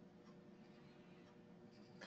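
Near silence: faint hiss with a faint steady hum.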